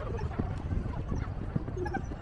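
Irregular footsteps on a paved walkway, with voices of people around in the background.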